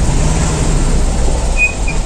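Volkswagen Kombi engine and road noise heard from inside the cabin while driving in second gear, a steady low rumble with a held hum. Two brief high squeaks come near the end.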